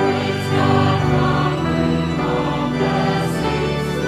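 Church choir singing a hymn with accompaniment, sustained chords that change about once a second, coming in loudly at the start.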